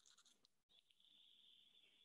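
Near silence: only a faint hiss, which cuts out for an instant about two-thirds of a second in and then goes on steadily.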